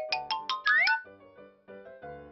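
A short musical sound effect laid over the picture: a quick run of about seven short ringing notes in the first second, two of them sliding upward, then the last tones fading away.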